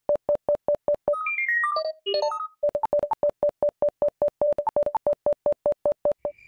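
Rapid synthesized electronic beeps at one steady pitch, about six a second, with the odd higher beep mixed in. About a second in, the beeping breaks into a short run of higher bleeps that step down in pitch and then jump about, before the steady beeping returns.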